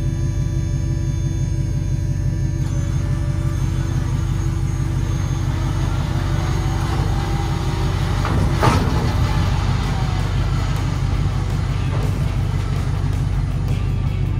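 Background music over the steady running of a truck engine and a roll-off trailer's hydraulic hoist as it lowers a steel roll-off dumpster to the ground. A single loud metal clank comes a little past halfway.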